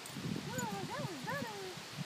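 German Shepherd whining in excitement: three short whines that rise and fall in pitch, with a low rustle of movement underneath.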